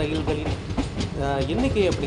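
Passenger train running along the tracks, heard from the open doorway: a steady low rumble with wheels clicking over the rail joints.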